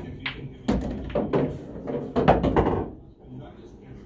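A pool cue strikes the cue ball with a sharp click right at the start, then for about two seconds a voice is heard, with a few sharper knocks among it.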